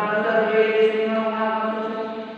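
A man's voice holding one long drawn-out vowel at a steady pitch, a word stretched out while speaking, lasting about two and a half seconds and fading near the end.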